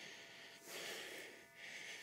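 A man's faint breathing close to the phone's microphone, two soft breaths.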